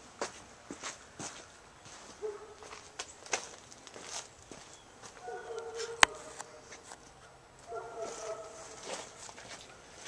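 Footsteps on concrete, irregular, with a sharp click about six seconds in. Faint held voice-like tones come and go behind them.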